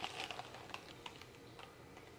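Faint, scattered light clicks and taps of cardboard food boxes being handled and turned over in the hands.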